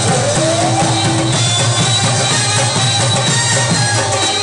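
Live Pashtun folk band playing: harmonium and reed melody over a steady drum rhythm, with a rising melodic slide about half a second in.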